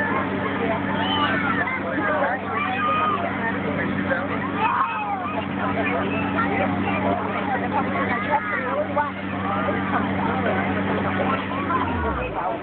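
A compressor motor runs with a steady hum as it fills the pumpkin cannon's air tank, then cuts off suddenly at the very end. A crowd of children chatters over it throughout.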